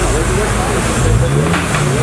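A car engine running, its revs rising briefly about a second in and then holding, with people talking over it.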